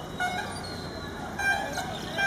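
Steady low rumble of an approaching ALCO WDM-3D diesel locomotive, far off, with a few short high-pitched calls over it: one soon after the start and a louder one around the middle.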